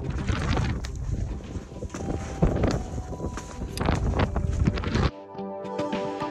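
Gusty wind buffeting the microphone, a rushing noise with a heavy low rumble. It cuts off suddenly about five seconds in, giving way to electronic background music with a steady beat.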